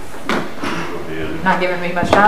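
Indistinct speech in a room, not clear enough to make out the words, with a short knock about a third of a second in.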